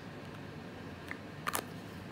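A sharp double click of a small plastic cosmetic jar being handled, about one and a half seconds in, with a fainter click just before it, over quiet room tone.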